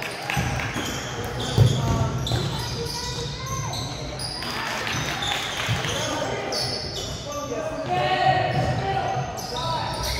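Basketball game on a gym's hardwood court: the ball bouncing, with a sharp thud about one and a half seconds in, sneakers squeaking over and over, and players calling out, all echoing in the large hall.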